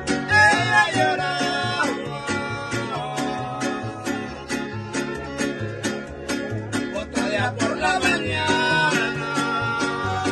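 Mariachi-style string group (violins, vihuela, guitar and guitarrón) playing a lively song live, with a steady alternating bass and strummed chords, and men's voices singing over it in places.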